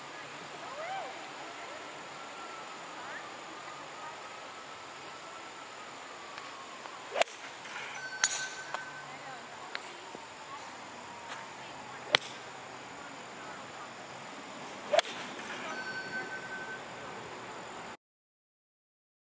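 Golf club striking balls off a practice mat: three sharp, loud clicks spread several seconds apart, over a steady faint outdoor background. Two short steady high tones sound briefly, soon after the first and the last strike.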